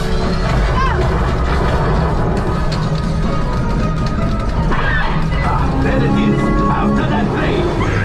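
Motion-simulator ride soundtrack: loud music with a constant deep rumble, sweeping effects and scattered crashing hits.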